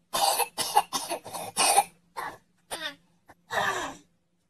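A person coughing in a fit: about five harsh coughs in quick succession, then a few more spaced-out coughs, with a longer one near the end.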